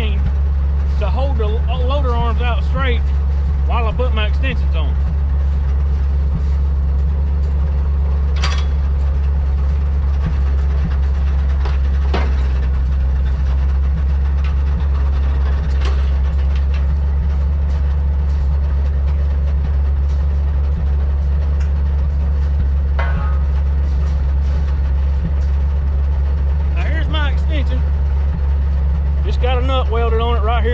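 Engine of an old side-loader log truck idling steadily, a low even drone, with a few sharp metal clanks about 8, 12, 16 and 23 seconds in.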